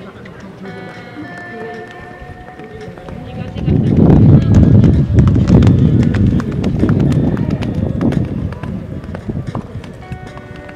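A pony cantering on a sand arena: its hoofbeats grow loud about four seconds in as it passes close by, then fade after about eight seconds.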